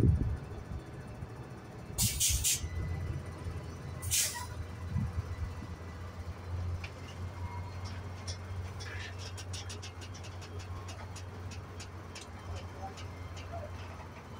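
Two short hisses of air from the vehicles' air brakes, then a diesel engine running at a low, steady idle. A faint, fast, even ticking runs over the idle for a few seconds.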